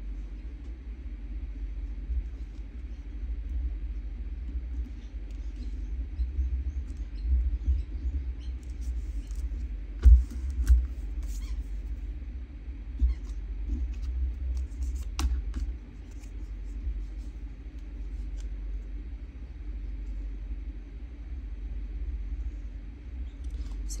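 Card stock strips being handled and pressed down on a craft desk: faint paper rustles and light taps over a steady low rumble, with a louder bump about ten seconds in.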